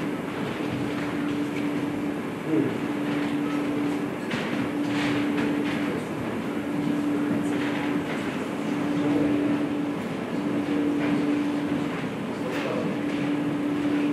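A steady hum holding one constant pitch, breaking off briefly about every two seconds, over a noisy background.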